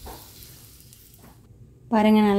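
Faint sizzling of shallots, garlic and green chillies in a steel kadai, cutting off about a second and a half in.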